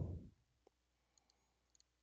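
Faint computer mouse clicks over near-silent room tone: one click about two-thirds of a second in, then a few fainter ticks in pairs later on.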